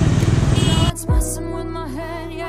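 Motorcycle engine and traffic noise, cut off abruptly about a second in by background music: held synth tones and a deep, falling bass drum hit.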